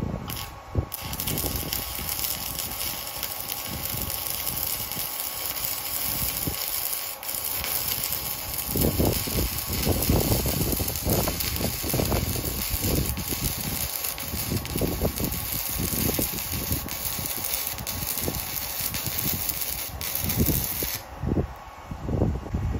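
Stick welding arc from a tiny handheld inverter stick welder set to 130 amps, struck about a second in and then crackling and hissing steadily as the rod burns on a vertical uphill bead, until the arc breaks off about a second before the end.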